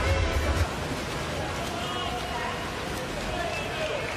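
Background music with a heavy bass stops about half a second in, leaving the reverberant murmur of a crowd in an indoor pool arena.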